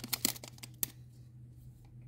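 Foil trading-card pack wrapper crinkling in the hand: a few light crackles in the first second, then only faint handling.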